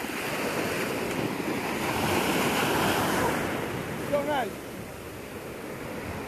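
Small ocean waves washing up a sandy shore, a steady rush of surf that swells to its loudest about halfway through and then eases, with wind buffeting the microphone.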